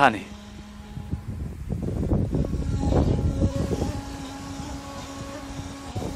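Wind buffeting an outdoor microphone, a low rumbling noise that swells in the middle seconds and eases off. A faint steady hum sits beneath it in the second half.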